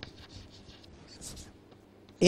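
Chalk writing on a chalkboard: faint, short scratching strokes as a word is written out.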